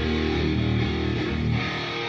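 Live progressive-metal band playing during a soundcheck, guitar to the fore over a low pulse about twice a second.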